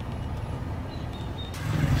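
Steady low rumble of road and tyre noise from riding in an open-sided electric tuk-tuk, with no engine sound; the noise grows louder near the end.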